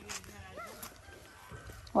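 Faint voices talking, with a loud spoken exclamation starting right at the end.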